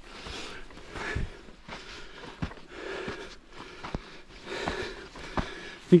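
A man breathing hard, winded from climbing a steep sandy slope, with a few soft footsteps in the sand.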